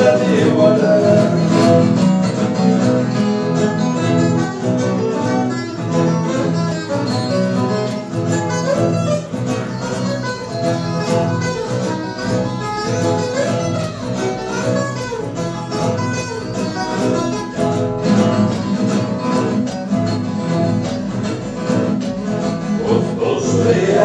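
Instrumental break of a moda de viola: a ten-string viola caipira picks a lively melody over a six-string acoustic guitar's accompaniment, steady and without singing.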